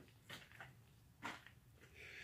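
Near silence: room tone, broken by two faint, short sounds, one about a third of a second in and one just past a second in.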